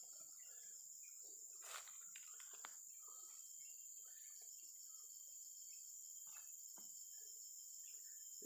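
Near silence with a faint, steady, high-pitched insect chorus of crickets or cicadas, broken by a few soft rustles and taps.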